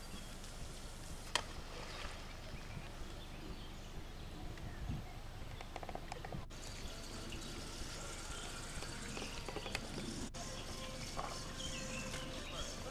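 Outdoor lakeside ambience: a steady noisy background with a low rumble and faint bird and insect calls, broken by one sharp click about a second in. The sound drops out briefly twice.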